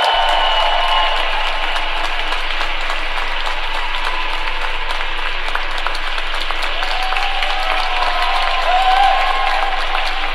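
Arena audience applauding steadily, with a few voices cheering just after the start and again near the end, where it swells slightly.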